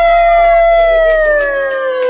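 A young child's long, high-pitched wailing cry: one drawn-out note that slides slowly down in pitch.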